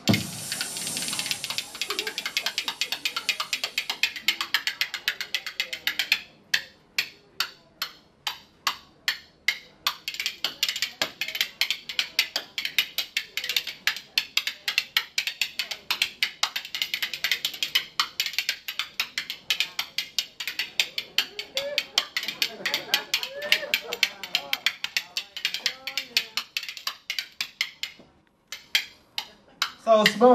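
A pair of curved metal spoons welded together, played as a solo percussion instrument, struck against hand and thigh in fast rattling clicks. The rhythm thins to single spaced strikes for a few seconds early on, returns to rapid rolls, and stops briefly near the end before a few last clicks.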